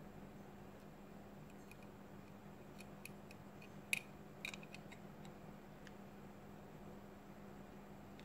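Faint small clicks and ticks of a metal tweezer tip against a plastic wall light switch and its metal contact strips as the switch is handled, with two sharper clicks in the middle.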